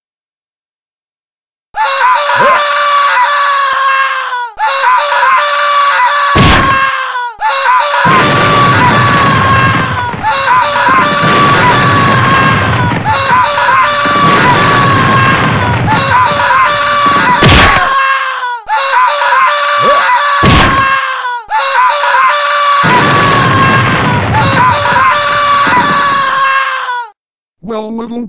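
Loud, drawn-out screams, repeated as long held cries of a few seconds each with short breaks, starting about two seconds in, with a few sharp hits among them: a cartoon character screaming as he is beaten.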